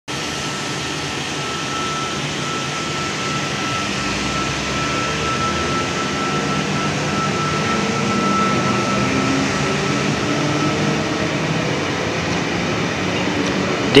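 Sydney Trains V set double-deck intercity electric train running past: a steady rumble with a thin high whine through most of it that fades out near the end.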